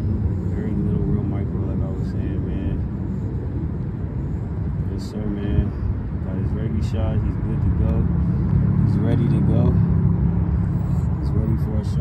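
Indistinct talking over a steady low rumble of parking-lot traffic. The rumble swells for a few seconds near the end, as of a vehicle running close by, and there is one brief click about halfway through.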